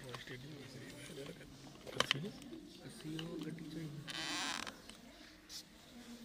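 A man's voice with a wavering, drawn-out pitch, speaking or chanting without clear words for the first four seconds. A sharp click comes about two seconds in, and a short hiss just after four seconds.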